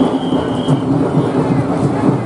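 Loud, steady din of a street procession: a dense wash of crowd and band noise with no clear beat, and a brief high tone near the start.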